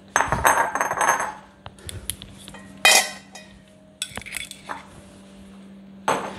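Squeezed-out cucumber water poured from a bowl with a splash for about a second, then kitchen dishes and a metal bowl clattering: one loud ringing knock about three seconds in and a run of lighter ringing clinks a second later.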